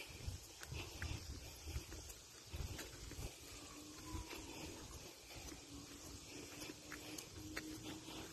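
Faint sounds of walking on a paved road: footsteps and low, irregular rumbling bumps of wind and handling on a phone microphone, with a few light clicks.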